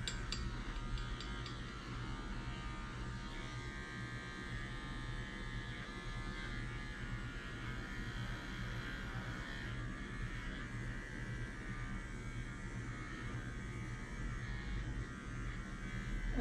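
Wahl Arco cordless pet trimmer with a five-in-one blade running with a steady electric buzz as it trims a dog's paw pads.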